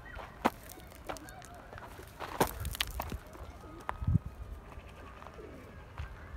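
Faint bird calls, with a few sharp clicks or knocks and one short low call about four seconds in.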